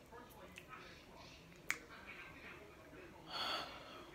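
A woman's short breathy sigh near the end, after a single sharp click a little before halfway; otherwise faint room sound.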